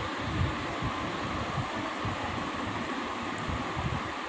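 Steady whooshing background noise like a running room fan, while a pencil writes a word on a workbook page.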